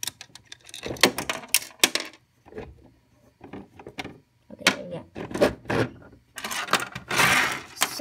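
Small plastic dollhouse accessories being handled and tidied: an irregular run of light clicks, taps and rattles as pieces are picked up and set down, with a louder rustling scrape about seven seconds in.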